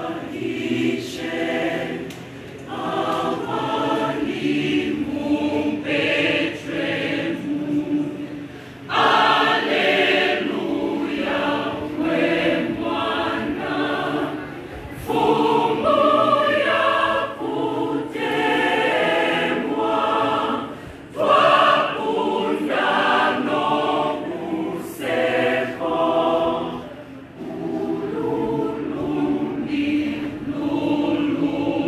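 Mixed church choir singing, many voices together in phrases with short breaks between them.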